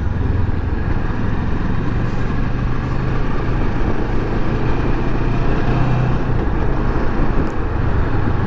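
Kawasaki Versys 650's parallel-twin engine running at a steady, even pace while riding, with wind and road noise heard from the rider's seat.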